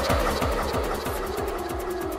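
Electronic dance music from a DJ mix: a fast, even run of deep bass hits, about four to five a second, each dropping in pitch, under a held synth tone.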